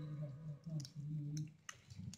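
Wet, soapy hands rubbed together at a washbasin, giving a few soft wet clicks. A low voice murmurs faintly through the first second and a half.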